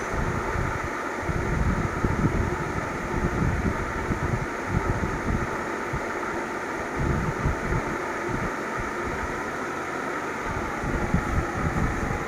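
Steady background hum with uneven low rumbling, like moving air buffeting the microphone.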